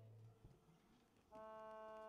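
The last sound of an accordion-and-violin ensemble dies away into near silence. About a second and a half in, a single soft held note with a steady pitch comes in from one of the instruments.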